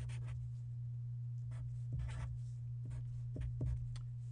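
Felt-tip marker drawing on paper in a few separate strokes: a longer stroke about two seconds in and two short tick strokes near the end, over a steady low hum.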